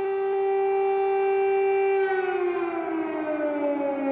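Air-raid siren sounding an air-raid warning. It holds one steady pitch for about two seconds, then falls slowly in pitch as it winds down.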